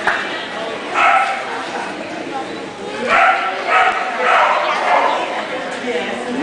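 Dogs barking and yipping in short bursts, one about a second in and several more close together between three and five seconds, over the murmur of people talking in a large hall.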